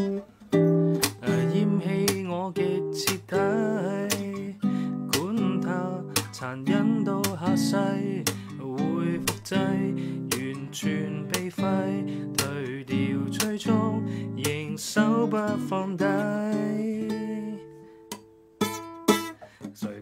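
Nylon-string classical guitar played as a chord-melody solo: plucked chords and melody notes with fill-ins, and a voice singing softly along at times. It thins out about eighteen seconds in, then a few strummed chords follow.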